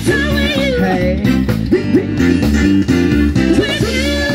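Live band music with drum kit, a steady bass line and keyboards, and a singer's voice gliding through runs early on and again near the end.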